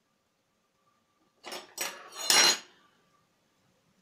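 A metal fork picked up and set into a glass dish: three quick clatters and clinks about one and a half to two and a half seconds in, the last the loudest.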